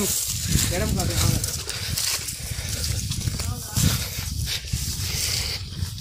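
Faint, indistinct voices of people on the move, over a steady low rumble and the rustle of movement along a grassy trail.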